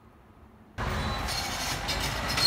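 After a quiet first second, a crawler bulldozer's diesel engine and clanking steel tracks come in abruptly and run on loud and steady.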